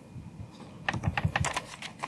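A quick run of about ten light clicks, like keys tapped on a laptop keyboard, starting about a second in and lasting about a second, as the presentation slide is advanced.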